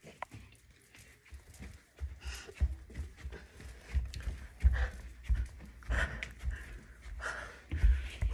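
A person climbing stairs, breathing hard: heavy footfalls landing about every two-thirds of a second from about two seconds in, with panting breaths between them. The steps are described as a workout.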